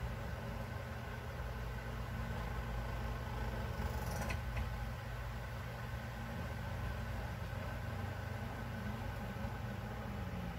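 A steady, unchanging low motor hum with a few faint steady tones above it, and a faint click about four seconds in.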